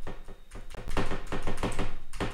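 Computer keyboard being typed on: rapid, uneven key clicks, several a second.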